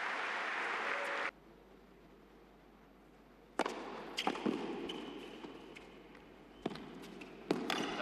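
Crowd applause after a point, cut off suddenly about a second in. After a short near-silent gap, a tennis ball is struck by racquets in a rally: a few sharp pops about a second or more apart, over a quiet arena background.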